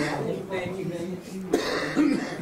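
Spectators talking close by, and about one and a half seconds in a person clears their throat with a short, sharp cough-like burst.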